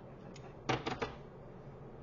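A quick cluster of three or four sharp plastic clicks and knocks about three-quarters of a second in, as a handheld hot glue gun is set down on the craft table, with one fainter click just before.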